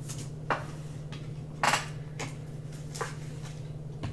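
A handful of short, light clicks and taps from trading cards and packaging being handled, the loudest about halfway through, over a steady low hum.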